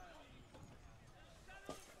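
Near silence: faint, distant voices of players and spectators around the pitch, with one faint knock near the end.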